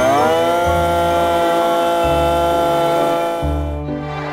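Cordless drill of the kind used to bore pine trunks for tree-vaccine injections: its motor spins up with a rising whine, runs at a steady pitch, and stops just before the end. Background music plays underneath.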